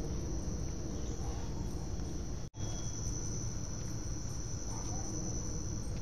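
Steady, continuous high-pitched insect chorus over a low background rumble, briefly cut by a momentary break in the audio about two and a half seconds in.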